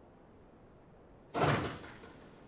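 A single sudden thump with a short rustle about a second and a half in, fading within half a second: a handheld microphone being handled.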